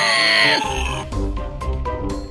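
A brief cartoonish sound effect with falling pitch, followed about a second in by background music of short, repeated bouncy notes over a low beat.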